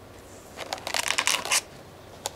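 Thin clear plastic punnet crackling and clicking as a hand picks it up and grips it: a dense flurry of crinkles starting about half a second in and lasting about a second.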